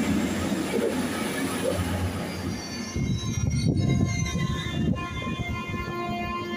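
A regional diesel multiple unit running beside the platform with a low engine rumble. About halfway, steady high tones take over, from an ICE high-speed train standing at the platform.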